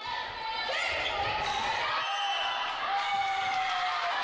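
Game audio of an indoor volleyball rally in a gymnasium: the ball being played and players moving on the court, with voices in the hall.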